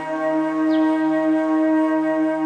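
Instrumental music holding a sustained chord of steady, unchanging tones.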